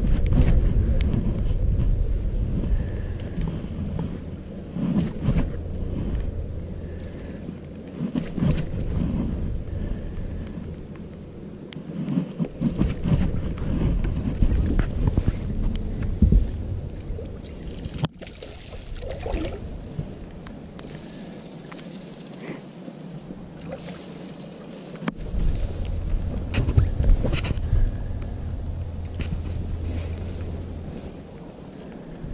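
Wind buffeting the microphone on an open bass boat, over a low steady hum that cuts out about twelve seconds in and comes back near the end, with a couple of sharp knocks.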